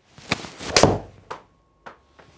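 A golf iron swung through and striking a ball off an artificial-turf hitting mat, the loudest strike just under a second in, followed by two lighter knocks. A well-struck shot, "absolutely ripped".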